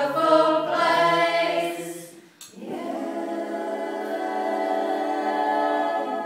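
Small mixed choir singing a cappella: a phrase that breaks off about two seconds in, then one long held chord that closes the song.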